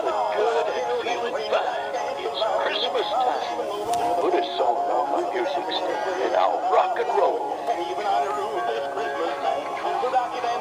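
Several battery-operated animated Santa Claus figures playing electronic Christmas tunes and recorded singing at the same time, the songs overlapping into a jumble.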